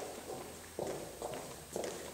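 Footsteps, a few steps at roughly two a second.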